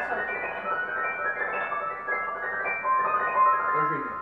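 Grand piano playing a passage of notes that overlap and keep ringing under the sustain pedal, with one high note held out near the end.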